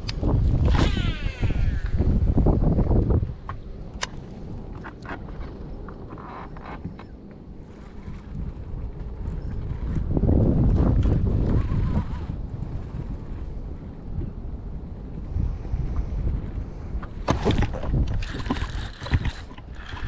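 Wind buffeting the microphone in gusts, loudest at the start and again about halfway through. About a second in, a baitcasting reel's spool whirs as a lure is cast, and a few sharp clicks from the reel and rod handling come near the end.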